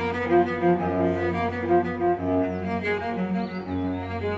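Bowed string ensemble music, cello to the fore, playing short melodic notes over a steady low held bass note.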